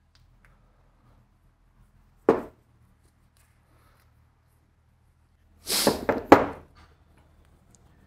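A single sharp knock about two seconds in, then a man laughing briefly near six seconds in, over a faint low hum.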